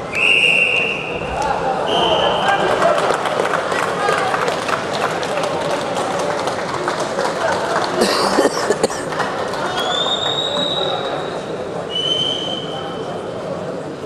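Referee's whistle blown four times over hall chatter: a long blast at the start, a short one about two seconds in, another long one about ten seconds in and a shorter one near twelve seconds, stopping the wrestling bout.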